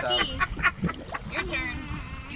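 Children's high-pitched voices chattering and calling out, with no clear words, over a steady low rumble.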